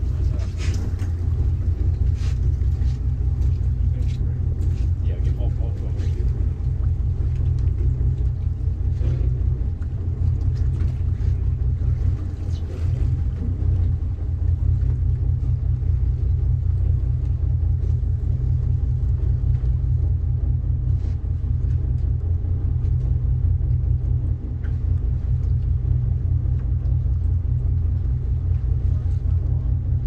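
Charter fishing boat's engine idling with a steady low rumble while the boat sits on the fishing spot, with faint scattered clicks in the first few seconds.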